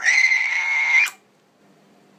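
A man's shrill, high-pitched shriek held on one steady note for about a second, bending up slightly as it cuts off.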